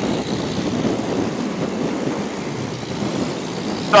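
Steady rush of wind and road noise from a Royal Alloy GP 300 S scooter riding at about 58 mph into a headwind, picked up by a camera on the rider.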